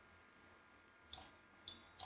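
Two faint clicks of a computer mouse about half a second apart, over near-silent room tone.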